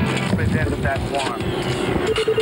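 TV news opening theme: a sustained electronic chord dying away under short warbling, sweeping synthesized effects, leading into the main theme.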